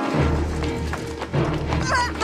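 Film-trailer music with a deep sustained bass note, with scattered short knocks from the scene over it and a brief voice near the end.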